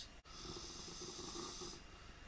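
A person's long breath close to the microphone: a soft hiss lasting about a second and a half that stops near the end.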